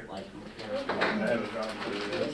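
Indistinct voices of people talking quietly in a room, with no clear words.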